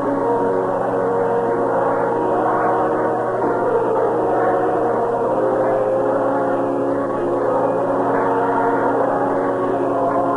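Ballpark organ playing held chords that change every second or two, as the home team takes the field, heard through an old radio broadcast recording with a steady low hum.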